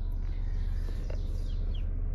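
Steady low hum of a BMW E90 3 Series idling in Park, heard inside the cabin, with a few faint, short bird chirps from outside and one faint click about a second in.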